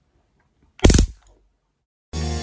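Handheld stun gun fired once, a brief loud electric zap about a second in.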